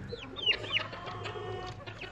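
Chickens calling: several short, high, falling peeps in the first second, then a fainter, longer call.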